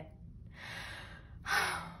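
A woman's breathy sigh: a soft breath of about a second, then a louder one about a second and a half in.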